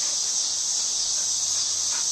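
A steady, high-pitched drone from a chorus of insects.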